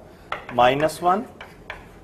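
Chalk tapping and scratching on a chalkboard as a line is written, a few short sharp clicks.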